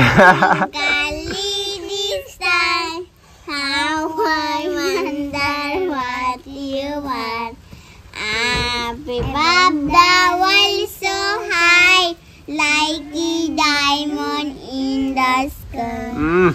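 A young child singing a nursery rhyme in a high voice, with held, wavering notes in phrase after phrase and short breaks between them.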